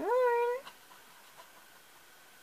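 A short wordless vocal sound from a woman, rising in pitch and then held for about half a second before it stops. Two faint ticks follow.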